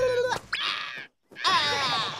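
Cartoon character vocal cries with no words: a held note breaks off, a short hissing whoosh follows, and after a brief silence comes a loud cry that falls in pitch.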